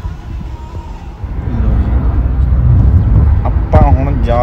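Steady low road and engine rumble inside a moving car's cabin, coming up about a second in, with a man starting to talk near the end.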